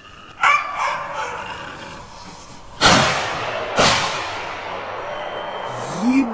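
Two rifle shots about a second apart, each followed by a ringing echo. Just before them, a short yelp.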